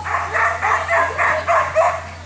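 A dog barking in a rapid, even string, about three barks a second, stopping just before the end.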